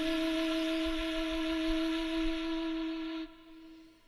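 Flute music: a single long held note that breaks off about three seconds in, leaving a short near-silent pause.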